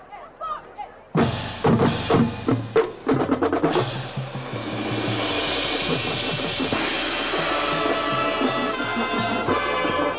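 High school marching band opening its show. About a second in, the band and drum line strike a series of loud, sharp accented hits; from about four seconds the brass and percussion play on together.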